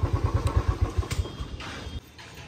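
A motorcycle engine running with a rapid, even low beat, fading away and then cut off at the end.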